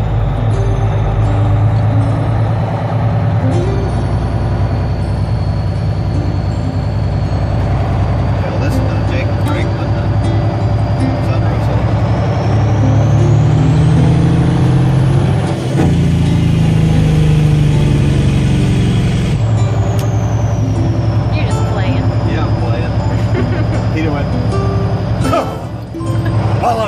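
Heavy truck's diesel engine running under way, heard from inside the cab. It climbs in pitch from about twelve seconds in, with a high whistle rising alongside it, then settles back down about twenty seconds in.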